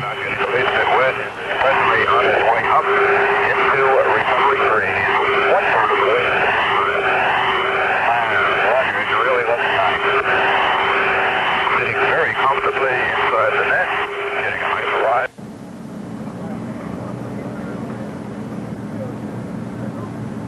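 Repeated sweeping tones layered over a steady held note, like a soundtrack effect, which cut off suddenly about fifteen seconds in. A quieter, steady hum follows.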